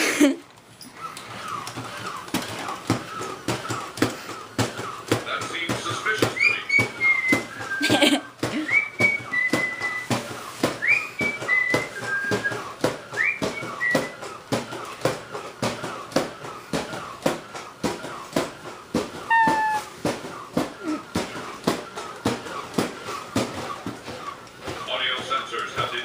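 Toy humanoid robot walking on carpet, its motors and gears clicking in a steady rapid rhythm. A run of rising whistle-like chirps, each ending in a held note, sounds between about six and fourteen seconds in.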